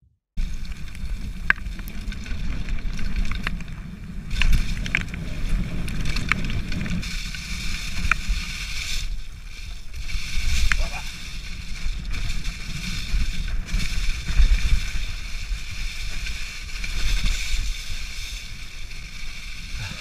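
Downhill mountain bike riding fast over a forest trail, starting about half a second in: a steady low rumble of tyres and wind on the microphone, with scattered sharp rattles and clicks from the bike over bumps.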